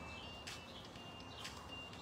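Quiet outdoor background with a few faint, short bird chirps and two soft clicks about a second apart.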